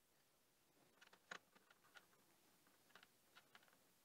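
Faint small metal clicks and ticks of an allen wrench working the clamp bolts of a line-tap piercing valve fitted around copper tubing, a cluster about a second in and a few more around three seconds in, against near silence.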